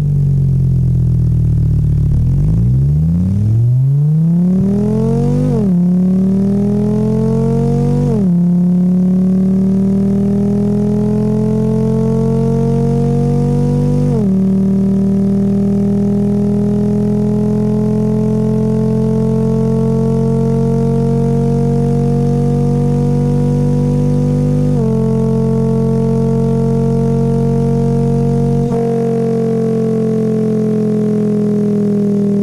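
Synthesized engine sound from a computer engine-sound simulator, standing in for a hybrid's engine during simulated paddle-shifted acceleration. The revs climb and drop suddenly in pitch four times, once at each simulated upshift, and each climb is slower than the last. Near the end the deepest part of the sound thins and the pitch slowly falls.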